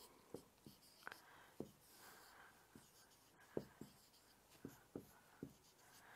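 Marker pen writing on a whiteboard: about a dozen faint, short strokes and taps at uneven intervals as letters and numbers are written.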